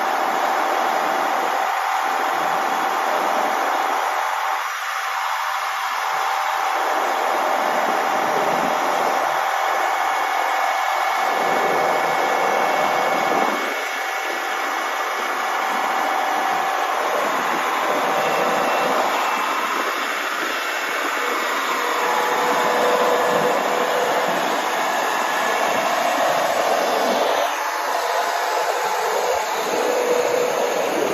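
Mastenbroek 40/20 tracked drainage trencher working as it cuts a drain trench: its engine and digging gear run at a steady level, with a faint high whine on top.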